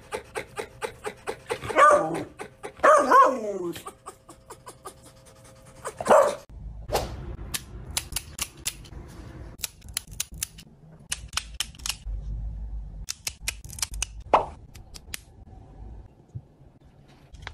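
Marble fox (a colour morph of the red fox) calling: loud, dog-like barking calls about a second apart, the second sliding down in pitch, over a fast run of clicks, with another loud call a few seconds later. Softer scattered clicks follow.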